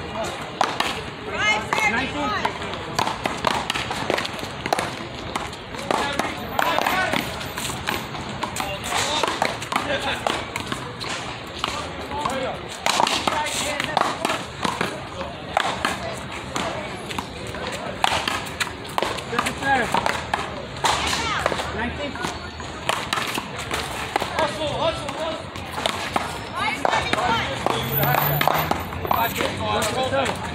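Sharp knocks and smacks of a big ball hit with wooden paddles and bouncing off the concrete wall and court, coming every few seconds amid people talking.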